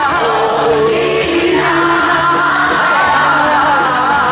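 Live rock band playing a Hindi Bollywood song through the PA: a male vocalist sings long, held notes over drums with regular cymbal strokes, guitars, bass and keyboard.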